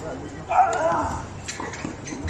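A tennis player's loud vocal grunt as the serve is struck, starting suddenly about half a second in, its pitch bending for about half a second. About a second later comes a sharp racket-on-ball hit of the return.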